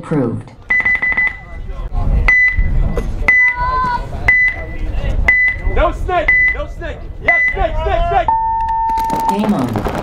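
Electronic game-start countdown: a short high beep about once a second, then a longer, lower tone about eight seconds in to start the point. Players shout between the beeps, and near the end paintball markers open up in rapid, overlapping fire.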